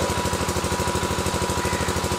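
A steady machine hum that pulses about a dozen times a second, like a small engine running, with a thin steady high tone over it.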